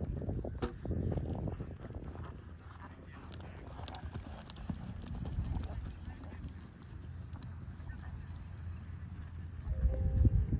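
Hoofbeats of a horse cantering on sand arena footing, a run of short thuds, with voices in the background.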